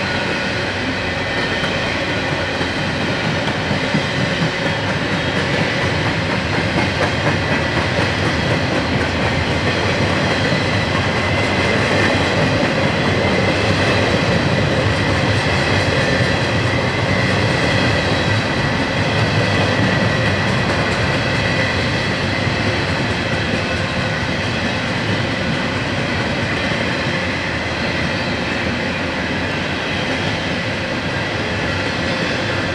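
Double-stack intermodal well cars of a freight train rolling past: a steady noise of steel wheels on rail that swells slightly in the middle of the passage.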